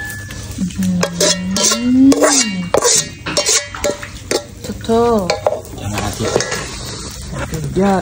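A metal spoon scraping a wet raw minced-beef-and-blood mixture out of a metal pot into a ceramic bowl: repeated short scrapes and clinks of spoon on metal, with wet squelching.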